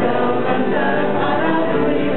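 A small parish church choir (schola) singing a hymn, many voices together. A low steady tone comes in underneath near the end.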